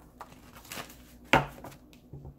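Tarot cards being handled and shuffled on a table: soft faint rustles and one sharp tap or snap about halfway through.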